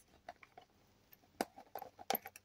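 Faint small clicks of a plastic screw cap being twisted off a field canteen, with one sharper click about one and a half seconds in.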